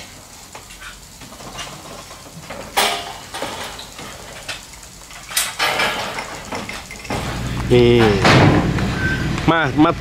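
Steel scaffolding pipes of a stage frame knocking and clanking as they are put up, with a few sharp metallic knocks. Voices take over in the last few seconds.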